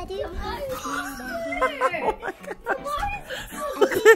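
Indistinct talking, with a high, child-like voice among the speakers.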